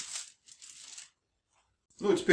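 Aluminium foil being folded and crumpled by hand: two short, faint rustles within the first second.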